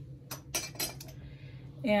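A few light clicks and clinks, about four within the first second, as tools and fabric are handled on a sewing and pressing table, over a low steady hum.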